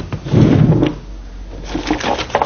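A door being unlocked and pushed open: a loud, low clatter about half a second in, then a few light clicks near the end.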